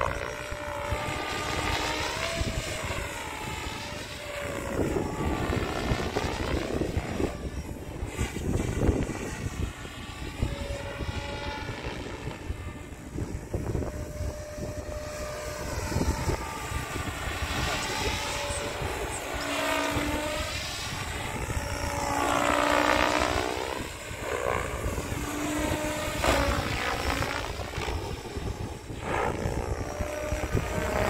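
PSG Dynamics Seven electric RC helicopter (X-Nova motor on 12S, 715 mm Azure blades) flying aerobatics: rotor noise with a steady motor whine, swelling and fading and sweeping in tone as it manoeuvres and passes.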